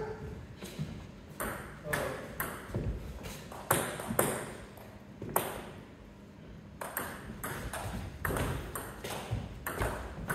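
Celluloid-style table tennis ball clicking off bats and the table, a run of sharp separate ticks at uneven spacing.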